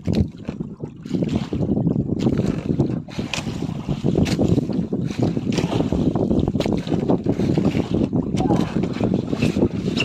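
Wooden outrigger boat under way through choppy sea: a steady, dense rumble of the boat and rushing water, with wind buffeting the microphone.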